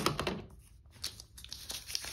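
Sliding paper trimmer's cutting head run along its rail, slicing through a sheet of vellum paper in the first half second. It is followed by light rustling and crinkling as the cut-off vellum strips are picked up.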